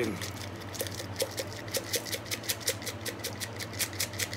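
Dried onion flakes rattling in a plastic jar as it is shaken over a bowl: a rapid, even run of light clicks, about five a second.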